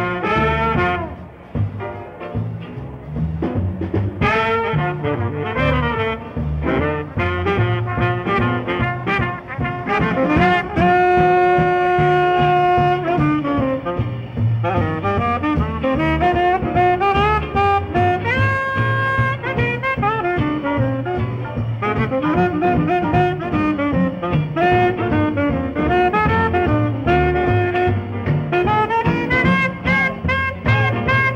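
Jazz septet of saxophone, trumpet, trombone, guitar, piano, bass and drums playing a swing tune, heard in an amateur live recording. The horns play together over a steady beat from bass and drums, holding one long note about eleven seconds in.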